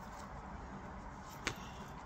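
A single sharp snap as a tarot card is drawn out of the deck, about one and a half seconds in, over faint room noise.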